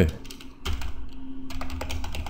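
Computer keyboard typing: a quick, irregular run of key clicks starting about half a second in as a word is typed.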